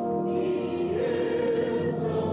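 Church choir of mixed men's and women's voices singing sustained notes, the chord moving up to a higher held pitch about a second in.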